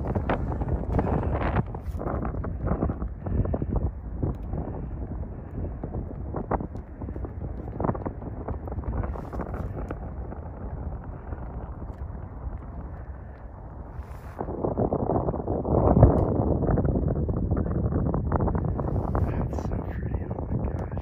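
Wind buffeting the microphone in gusts, a rough rumble that eases in the middle and grows louder again about two-thirds of the way through.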